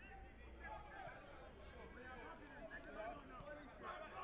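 Faint, distant voices calling and chattering around an outdoor football pitch during play.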